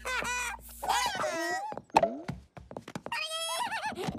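Cartoon character vocal effects: high, wavering squeals and chatter without words, in two runs, with a single sharp thud about two seconds in.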